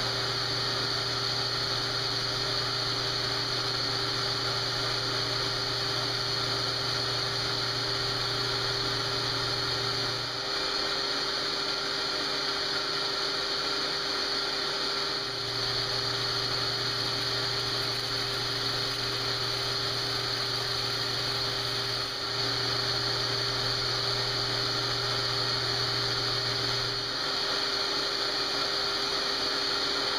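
Metal lathe running steadily, spinning a sanding disc used to smooth and round the edge of a vinyl record coaster. A low hum under the machine noise drops out for a few seconds about ten seconds in, comes back, and stops again near the end.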